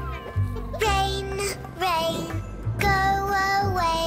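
Children's cartoon song music with a steady bass line, and a cartoon cat's meows over it, two short ones about one and two seconds in.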